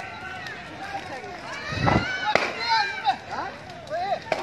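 Several people talking at once in the background, their voices overlapping without clear words. There is a short low thump just before the middle.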